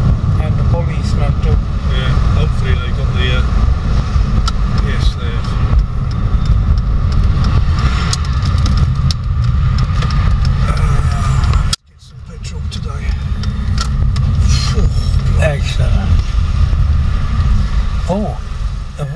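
Road noise inside a moving car's cabin: a steady low rumble of engine and tyres. About two-thirds of the way through it cuts out abruptly, then swells back to the same steady rumble.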